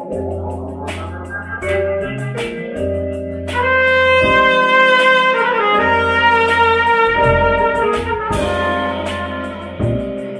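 Live band music: trumpet playing long held notes over electric bass, drums and a Nord Stage keyboard. The trumpet grows louder about three and a half seconds in and holds its notes for several seconds.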